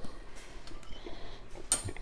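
A metal fork set down on a granite countertop: one sharp, ringing clink near the end, with faint small clicks before it.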